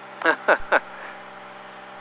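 Steady drone of a single-engine light airplane's piston engine, heard through the cockpit headset intercom. A brief laugh of three falling syllables comes near the start.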